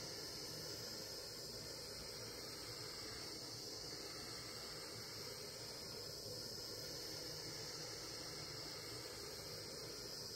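Butane micro torch burning with a steady hiss, its flame played over a coil of 18-gauge copper wire to heat it for annealing.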